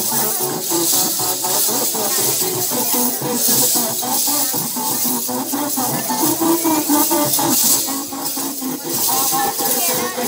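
Many lezims, wooden-handled jingle instruments with small metal discs, jangling together in a steady rhythm as they are swung, over a loudly played Hindi film song with singing.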